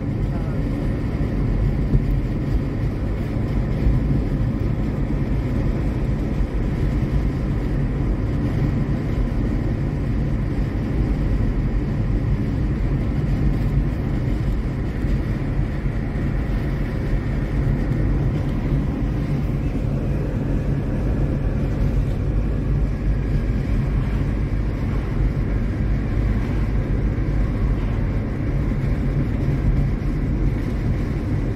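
Steady road and engine noise heard inside a car's cabin while it cruises at constant speed, a low rumble from tyres and engine with no distinct events.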